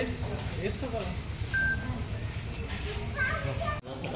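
Faint chatter of a group of people, with children's voices among them, over a steady low rumble. The sound drops out abruptly for an instant near the end.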